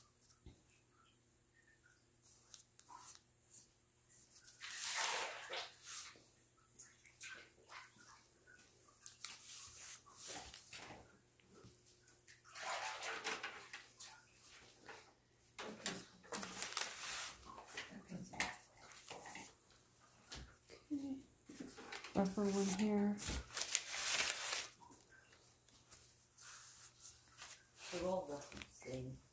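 A damp sponge and fingers rubbing over the soft wet clay wall of a small pinch pot, in intermittent strokes a second or two long, smoothing out its wrinkles.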